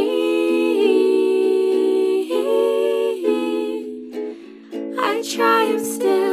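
A slow hymn sung with instrumental accompaniment: long held notes for about four seconds, a short lull, then the next phrase starting about five seconds in.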